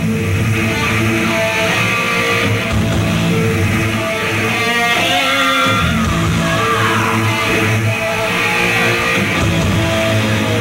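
A thrash metal band playing live: distorted electric guitars and bass riffing over a drum kit, loud and steady throughout.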